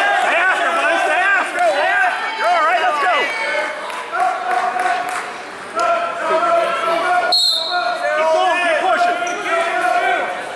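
Several voices calling out in an echoing gym hall, with short high squeaks. About seven seconds in, a referee's whistle blows once to start the wrestling.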